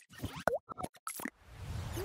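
Motion-graphics logo sound effects: a quick string of short pops and clicks, one with a quick sliding pitch, then a swelling whoosh in the second half.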